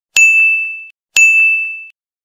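Two identical high-pitched ding sound effects about a second apart, each a single bright bell-like tone that rings and fades, then cuts off short.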